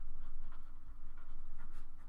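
Felt-tip marker writing on paper: a run of short scratchy strokes as a word is written.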